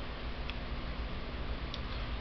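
Steady low background hum of the room, with two faint ticks, one about half a second in and one near the end.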